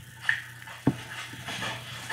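A dog running through snow: a short high squeak shortly after the start, a sharp thump about a second in, then a rustling hiss of movement.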